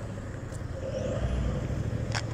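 Road traffic: a car and a motorcycle driving past, a steady low engine hum that grows slightly louder, with a faint rising whine about a second in.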